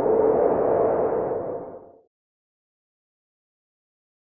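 Edited-in whoosh sound effect: a swell of noise with a steady humming tone in it, fading out about two seconds in.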